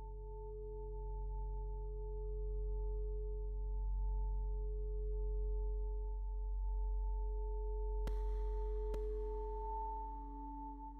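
Feedback-reverb drone from an Empress ZOIA Euroburo's Feedbacker patch: several steady pure tones held together over a deep low hum. Just past eight seconds in, two clicks about a second apart bring in a hiss-like wash, and a new lower tone swells in near the end.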